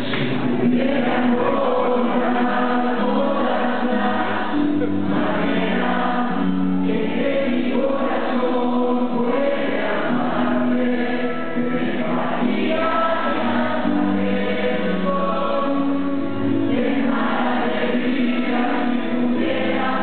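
A live rock band playing a song: electric guitars and drums, with singing over them, heard from the audience in a theatre hall.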